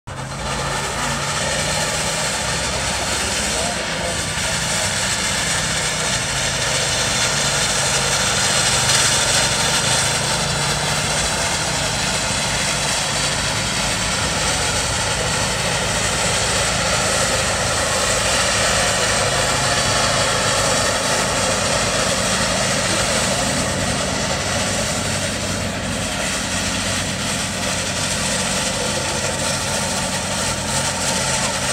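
Steam traction engine working hard under load for the spark show, its exhaust making a steady loud noise as the stack throws sparks, with voices mixed in.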